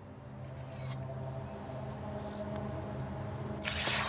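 A drone of low held tones swells slowly. Near the end comes a short hissing rip as a sharp sword blade slices through a sheet of paper.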